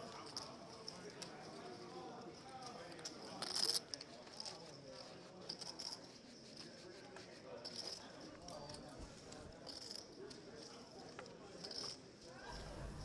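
Faint poker-room ambience: a low murmur of distant voices with light clicking of poker chips being handled, and a brief louder clatter of chips about three and a half seconds in.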